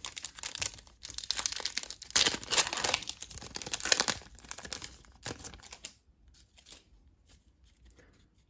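Foil wrapper of a trading-card pack being torn open and crinkled by hand: a dense crackling tear, loudest two to four seconds in, dying away about five seconds in.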